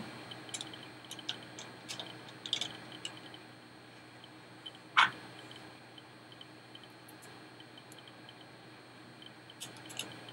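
Small clicks and taps from an archery arrow rest being handled as its outer shield is fitted back on, with one sharper click about five seconds in.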